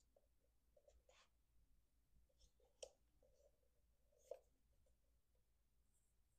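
Faint rubbing and soft clicks of a small handheld plastic device being passed over clothing, with two sharper clicks about three and four seconds in.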